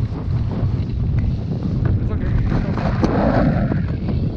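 Strong airflow of a paraglider flight buffeting an action camera's microphone, a steady loud rumble. From about two seconds in it is overlaid with rustling and scraping as the camera is pressed against clothing.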